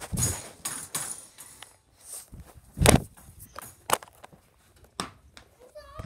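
Handling noise from a tablet being carried and moved with its microphone covered: rubbing, rustling and a series of knocks, the loudest about three seconds in.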